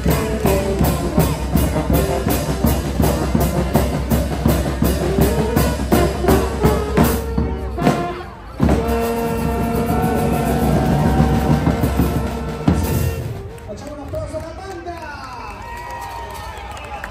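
A carnival street band of clarinets, saxophones, brass and drum playing, with a steady drum beat through the first half. After a short break about halfway, the band plays held notes that grow quieter near the end, with crowd voices underneath.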